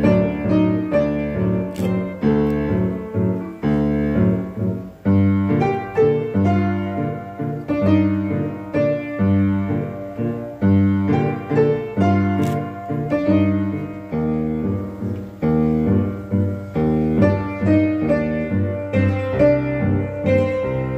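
Upright piano played four hands: a steady, even run of notes and repeated chords over a bass line.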